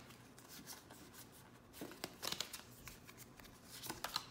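Faint rustling and soft flicks of a stack of Pokémon trading cards being slid and shifted in the hands, with a cluster of quick card flicks about two seconds in.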